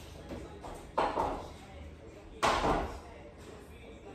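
Dumbbells being set down on a dumbbell rack: two sudden clanks about a second and a half apart, each ringing out briefly.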